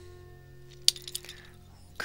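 Soft background music holding one sustained note, with a sharp clink a little under a second in followed by a few lighter clicks of small hard objects.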